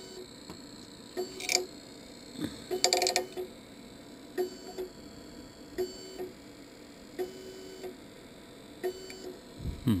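A Monoprice MP Select Mini 3D printer being run from its front-panel control knob: a string of about ten short clicks and brief steady buzzing tones, irregularly spaced, with two louder ones near the start.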